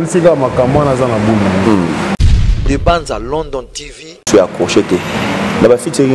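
A man talking, the speech unbroken except for an abrupt cut about two seconds in to a different-sounding stretch of voice over a low rumble, which fades out and gives way to the talking again about four seconds in.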